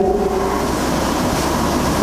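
A man's drawn-out 'ou…' fading out in the first half-second, then a steady, fairly loud hiss from the recording's background noise.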